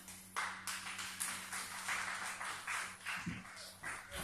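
Scattered clapping from a few people in the audience, two or three uneven claps a second, fairly faint.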